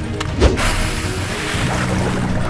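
Cartoon splash sound effect: a thud about half a second in as a character drops into water, then a long rushing, sloshing splash, over background music.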